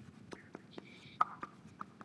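Chalk tapping and scratching on a blackboard during writing: a string of short, sharp taps at uneven intervals, the loudest just over a second in.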